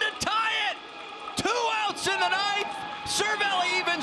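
Speech only: a male TV baseball broadcaster talking over the home-run call.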